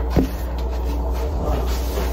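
A steady low hum, with one short knock just after the start.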